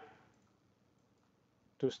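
Near silence with a few faint clicks from computer input while a value is entered in a field.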